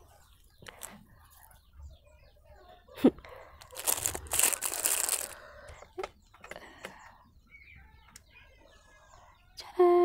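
A single sharp click, then about a second and a half of plastic packaging crinkling as a small squishy fidget toy is handled.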